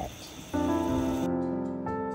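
Hiss of a garden hose spraying water onto soil. About half a second in, gentle piano music begins with held notes, and the water hiss cuts off about a second later.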